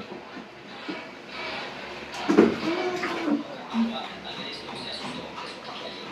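A baby making a few short vocal sounds during a bath, a little after two seconds in, over a low, even hiss.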